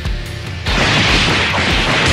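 Action music with a steady low beat. About two-thirds of a second in, a loud, dense rush of noise starts and runs on: a sound effect for a rapid barrage of punches.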